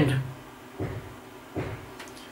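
A man's voice trailing off at the end of a word, then a pause broken by two faint, soft knocks, the first about a second in and the second shortly after.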